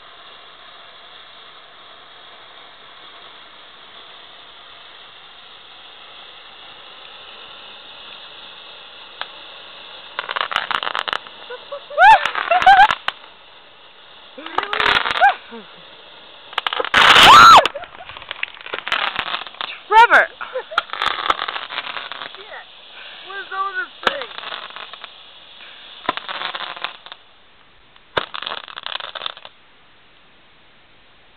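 Roman candle fireworks going off, mixed with loud screams and shrieks in bursts from about ten seconds in until near the end. Before that there is a steady hiss.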